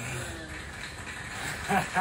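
A man breathing hard after an intense leg workout, with short voiced exhalations about once a second, then a louder burst of voice near the end as he breaks into a laugh.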